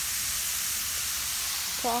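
Seasoned taco meat and sliced onions sizzling steadily on a hot flat-top griddle, an even high hiss.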